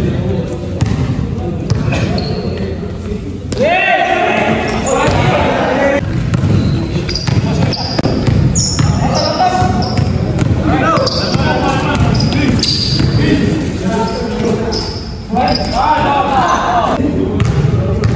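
A basketball bouncing on an indoor court floor with repeated sharp thuds during play, echoing in a large gym. Players shout now and then, loudest about four seconds in and again near the end.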